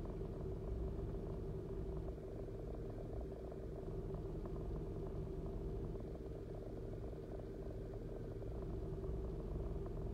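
A car engine idling steadily, heard from inside the car's cabin.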